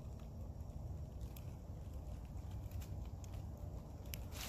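Quiet woodland background: a steady low rumble with a few faint ticks scattered through it.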